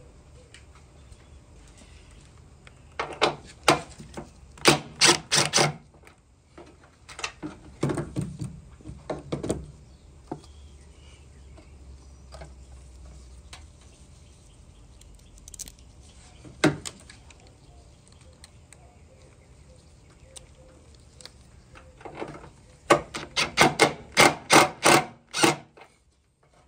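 Hand tool clicking and knocking against metal as a ground wire is fastened under the hood: several bursts of quick clicks, a single knock about halfway through, and a long run of rapid clicks near the end.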